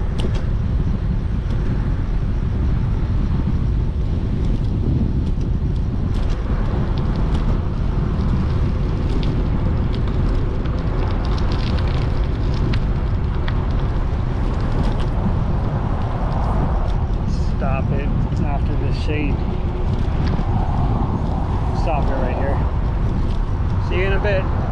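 Steady low rumble of wind on the microphone while riding a bicycle, mixed with traffic noise from the highway alongside.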